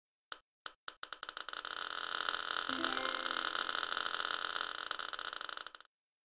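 Rapid clicks that start as a few separate ticks and speed up into a fast, continuous roll, then cut off abruptly: an edited-in click-roll sound effect.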